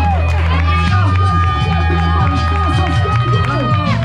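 Live rap song played loud over a club PA: a backing beat with a heavy, stepping bass line and long held synth tones, with the performer's voice on the microphone over it.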